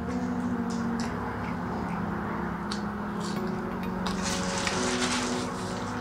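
Soft background music with held notes that change pitch a couple of times, under faint scattered mouth and food-handling sounds of someone eating a steak sandwich.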